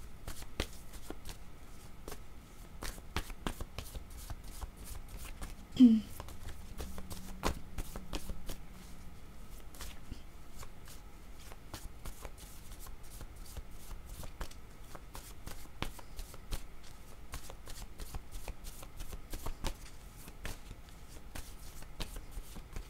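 A deck of paper oracle cards being shuffled by hand: a continuous patter of small card clicks and slides. About six seconds in, a brief voiced sound rises above it as the loudest moment.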